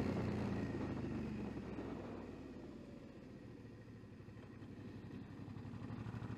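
Suzuki V-Strom 650's V-twin engine running at low revs on a slow climb through a hairpin. Its sound fades over the first few seconds and builds again near the end.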